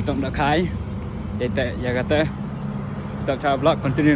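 Steady low hum of a nearby locomotive engine running at idle, under a man's voice talking in short bursts.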